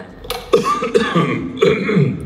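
A person coughing and clearing their throat, about three coughs in quick succession.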